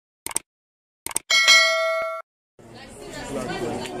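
Subscribe-button animation sound effects: two short clicks, then a bright bell-like chime of several tones that rings for about a second and cuts off. After a moment's silence, a crowd of voices starts chattering.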